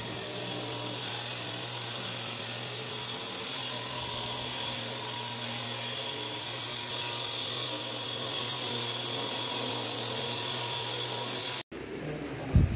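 Handheld electric grinder cutting through a quartz countertop slab: a steady, even grinding whine held without a break, which cuts off suddenly near the end.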